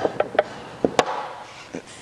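A quick run of light taps and clicks from hands and a plastic squeegee handling a car's fuel filler door, the sharpest one about a second in.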